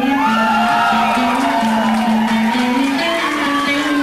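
Live acoustic rock performance: a held low note that steps up and down in pitch, with wordless wails rising and falling over it.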